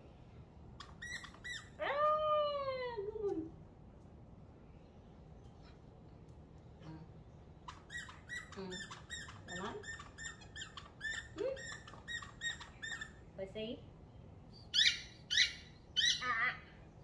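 Small dog whining during tug play: one long whine that rises and falls about two seconds in, then short whimpers, with a run of quick high squeaks about three a second in the second half and two loud squeals near the end.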